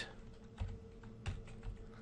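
Computer keyboard being typed on: a few faint, separate key clicks, about two of them clearer, as a line of code is entered.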